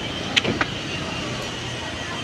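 Steady street traffic noise with a low engine hum from vehicles nearby, broken by two short clicks about half a second in.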